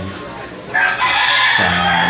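A rooster crowing once, high-pitched and rising then falling, lasting just under a second and starting near the middle.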